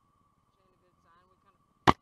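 A single sharp knock, very short and loud, near the end, over a faint steady high tone.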